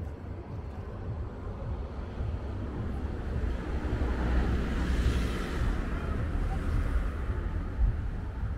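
Street traffic: a vehicle passing on the road, its noise swelling to a peak about five seconds in and then fading, over a steady low rumble.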